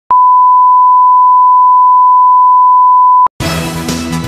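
A steady 1 kHz sine tone, the line-up reference tone at the head of a broadcast tape, held for about three seconds and cutting off sharply. After a short gap, theme music starts near the end.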